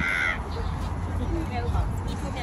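A single short caw, like a crow's, at the very start, over faint distant voices.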